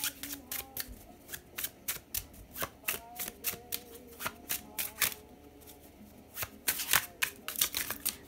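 A deck of cards being shuffled by hand: a string of sharp, irregular card snaps and flicks that come faster near the end.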